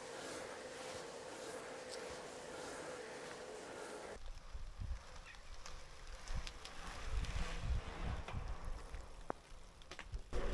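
Steady riding noise from a bicycle on a tarmac lane, an even hiss of tyres and air with a faint steady hum. About four seconds in it changes abruptly to quieter outdoor sound, with uneven low wind rumble on the microphone.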